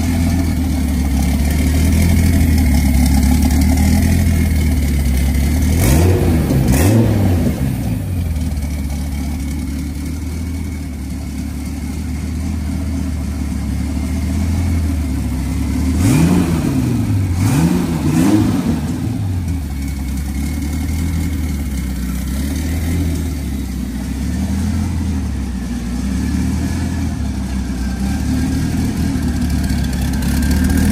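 Twin-turbo Dodge Viper V10 idling steadily on its first run, its throttle blipped by hand at the throttle body: two quick revs about six seconds in and three more a little past halfway, each rising and falling back to idle.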